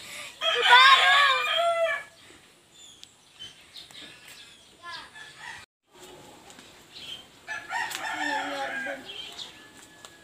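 A rooster crows once, loud, for about a second and a half, near the start.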